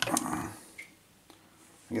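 A sharp click as the metal telephone bellset is set down on the table after being turned over, followed by a brief low murmur of the speaker's voice, then near quiet with a couple of faint ticks.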